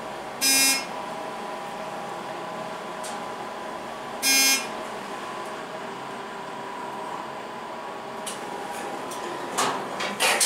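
Dover hydraulic glass elevator in motion with a steady hum. Its electronic buzzer sounds twice, short buzzes about four seconds apart, typical of a floor-passing signal. A brief clatter comes near the end.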